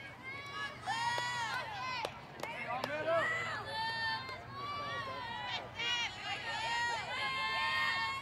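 High-pitched girls' voices of softball players chanting and cheering from the dugout, many overlapping drawn-out calls, with a few sharp clicks about two seconds in.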